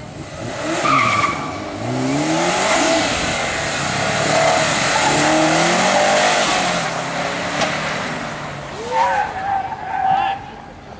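Turbocharged 2.5-litre flat-four from a 2005 Subaru STi, swapped into an Impreza wagon, launching hard and revving up repeatedly, its pitch climbing again and again through the run. The tires squeal as the car slides through a corner near the end.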